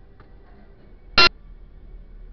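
A single short, loud beep lasting about a tenth of a second, a little past the middle.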